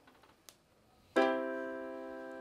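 Electronic keyboard playing one chord: several notes struck together about a second in and held, fading slowly.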